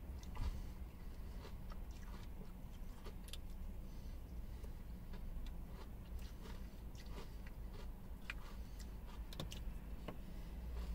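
Quiet eating sounds: a plastic spoon scraping and clicking in a small ice-cream pot, and chewing of mouthfuls of ice cream with Oreo pieces, as scattered short ticks over a steady low hum.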